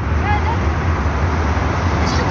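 Steady street traffic noise with a low rumble, and a brief high child's voice a moment in.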